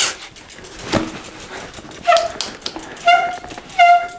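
Rim brake on a bicycle's front wheel squealing in three short squeaks as the brake is tried, after a knock about a second in: the brakes still squeal after the rims were resurfaced with emery cloth, which doesn't always work.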